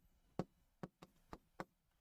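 Faint, irregular taps of a marker pen striking a whiteboard while writing, about five in two seconds.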